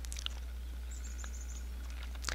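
Faint songbird chirps outdoors, with a short rapid high trill about a second in, over a steady low hum.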